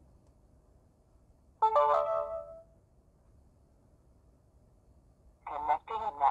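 Wi-Fi pan-tilt security camera starting up: a short electronic chime of a few quick notes about one and a half seconds in, then near the end a brief spoken voice prompt from its built-in speaker as it runs its startup checks.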